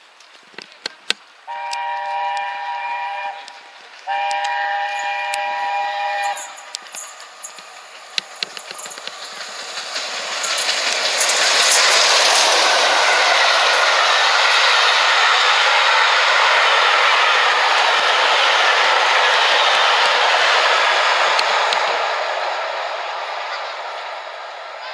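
LNER A4 Pacific steam locomotive 60009 Union of South Africa sounding its chime whistle in two long blasts as it approaches. It then runs through at speed, the engine and its coaches passing close in a loud steady rush with wheel clatter that eases off near the end.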